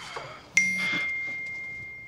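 A single high bell-like ding: a sharp strike that rings on one clear tone and fades away over about a second and a half.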